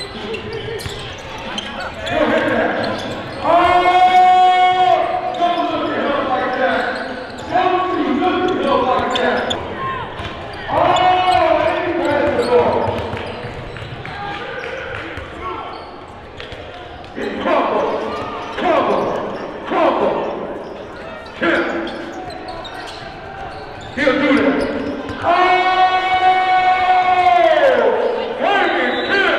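A basketball being dribbled on a hardwood gym floor during a game, with players and spectators calling out in the echoing gym. Loud, long pitched calls stand out about four seconds in, around eleven seconds in and near the end.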